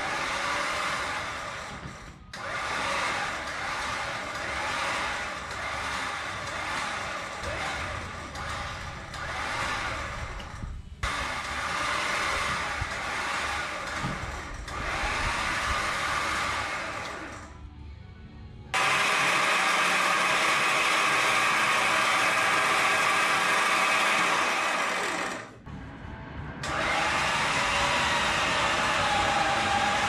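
ZEAK 10,000 lb electric winch motor whining under load as it reels in its synthetic rope, pulling a camper trailer. It runs in several stretches, stopping briefly about 2, 11, 18 and 26 seconds in.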